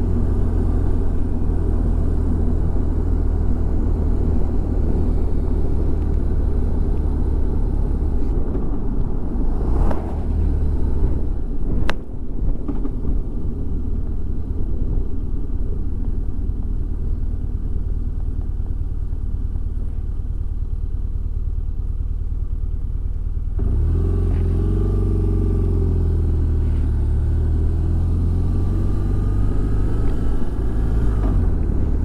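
Motorcycle riding along at road speed, its engine's steady low rumble under wind noise on the bike-mounted microphone. A sharp click comes about twelve seconds in, and about six seconds before the end the engine note changes and wavers up and down.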